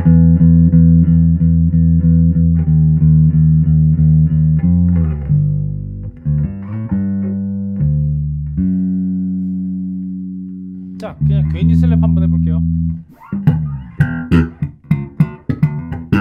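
Electric bass played through a DSM & Humboldt Simplifier Bass Station preamp and cabinet simulator into a Markbass amp. It opens with a run of quick repeated notes, about four a second, moves to slower held notes, and ends with sharp percussive notes in a slap style.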